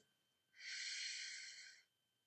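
A woman sounding a long voiceless "fff", the F letter sound, for about a second, starting about half a second in. It is the unvoiced hiss of air pushed between the upper teeth and lower lip, with no vibration from the throat: the voiceless partner of the V sound.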